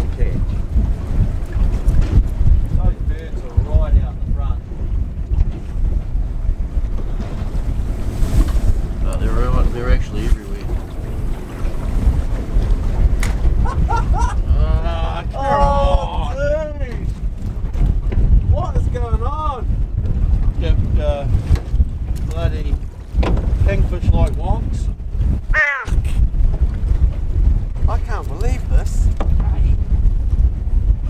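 Wind buffeting the microphone: a loud, steady low rumble that drops out briefly about 26 seconds in, with indistinct voices on and off over it.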